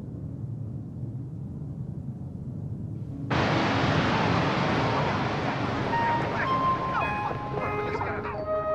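Soundtrack effects: a low rumble, then about three seconds in a sudden, loud rushing noise, with pitched tones and short gliding whistles joining near the end.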